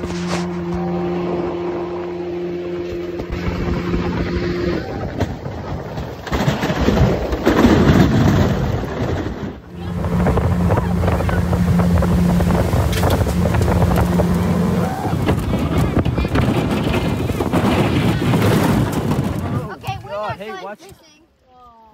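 A 125 hp outboard jet motor drives a small aluminium boat under way with a steady hum, over a continuous rush of water and wind. Around seven to eight seconds in, the rushing swells loudest and the motor's hum fades under it. The hum comes back steady after a short dip near ten seconds.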